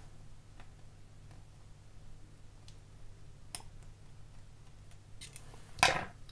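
Faint small clicks of steel tweezers working a tiny photo-etched brass part, with one sharper click about three and a half seconds in, over a low steady hum. A louder brief noise comes near the end.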